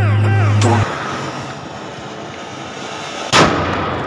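A Ganga Jamuna firecracker hissing as it burns, then going off with one loud bang about three seconds in. Background music plays for the first second.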